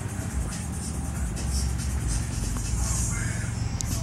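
Steady low hum of idling cars in a queue, with music playing in the background.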